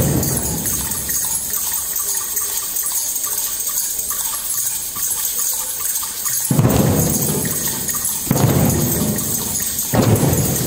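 Drum circle: many shakers and hands on the drumheads making a steady, rain-like hiss. About six and a half seconds in, and again near the end, the hand drums swell into loud rolls.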